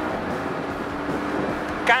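Porsche 718 Boxster's turbocharged flat-four boxer engine running steadily as the car drives through a chicane, mixed with road and wind noise picked up by a camera mounted low on the car's side.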